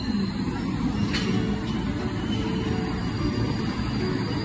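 A JR West local electric train rolling slowly along the platform, a steady low rumble, with music playing over it. There is a short high click about a second in.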